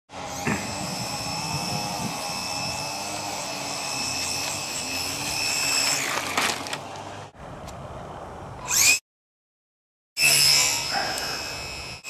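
Electric motor and propeller of a HobbyZone Super Cub RC plane running with a steady high whine. The sound breaks off about seven seconds in, drops to a second of silence, then the whine returns.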